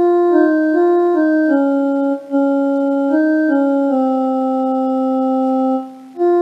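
Electronic keyboard playing a slow melody phrase on an organ-like sustained voice, one note at a time in the sargam pattern Ga Re Ga Re Sa, Sa Re Sa Ni. The short notes step up and down and end on a long held low note, given as a line for a beginner to sing along to.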